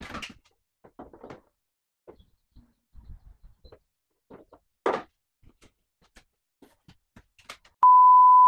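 Light knocks and clatter of black 3D-printed plastic bumper pieces being picked up and set down on a desk. Near the end a loud steady beep on one pitch starts.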